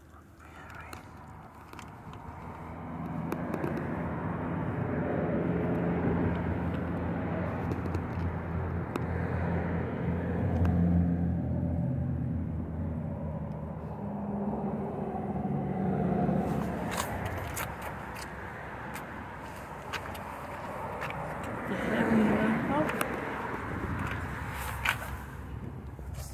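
A vehicle engine running at low speed, a low hum that swells to its loudest around the middle and then fades, with muffled voices underneath.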